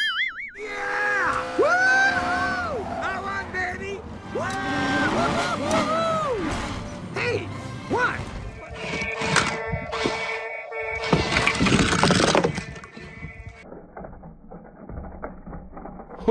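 Animated film soundtrack: voices over music for the first several seconds, then a louder, noisy stretch of about five seconds full of knocks and cracks, which dies down a few seconds before the end.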